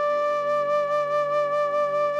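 Background music: a flute holding one long, steady note over a low sustained accompaniment.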